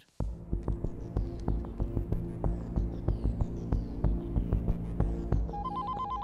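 Film background score: a low throbbing drone with sustained tones under a quick pulsing beat of about four hits a second. Near the end, a short run of electronic mobile-phone beeps comes in over it.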